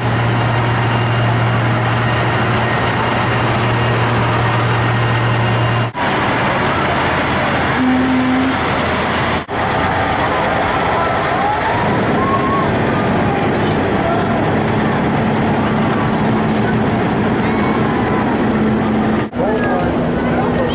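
Large diesel parade vehicles driving past. A self-propelled forage harvester gives a steady low engine drone for about the first six seconds, then a semi-truck towing a float goes by. Crowd voices run under the engine noise, and the sound drops out briefly three times.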